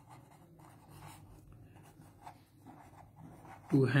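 Pen writing on paper on a clipboard: faint, uneven scratching strokes as a line of words is written.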